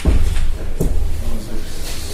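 Handling noise of a handheld microphone being passed from hand to hand: several low thumps and rubs on the mic body.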